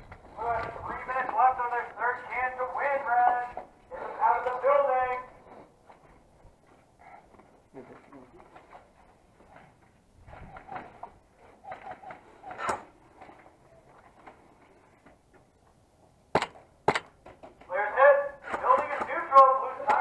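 Indistinct shouting voices of players, with isolated sharp cracks of airsoft fire: one about halfway through and two about half a second apart near the end, followed by more shouting.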